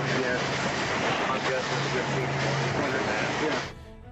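Rough recording from a patrol boat's onboard camera: constant rushing noise and a steady low motor hum, with a man's voice talking through it. It all cuts off abruptly near the end.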